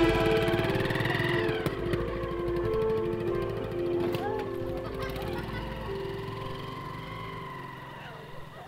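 Music with a melody of long held notes over a fast pulsing beat, fading out gradually.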